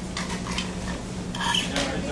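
A man drinking from a plastic cup: two short sips about half a second and a second and a half in, over a steady low hum.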